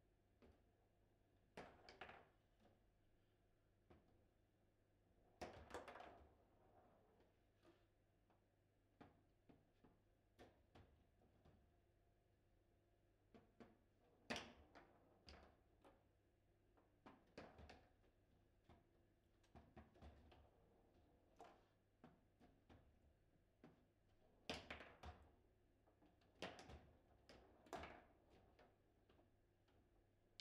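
Table football play: irregular knocks and clacks of the ball striking the plastic men and the table walls, and of the rods being worked, with a few louder hits among many faint ones. A low steady hum runs underneath.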